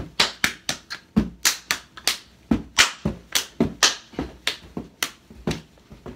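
A person's hands clapping in a fast, uneven rhythm, about four claps a second, weakening and stopping near the end.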